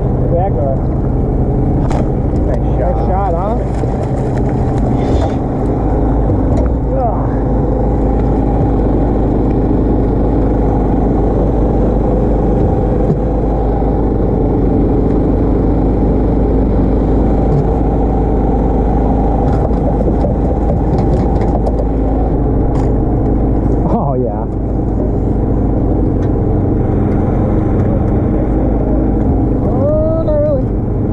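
A small engine on a bowfishing boat running steadily at constant speed, giving a loud, even hum.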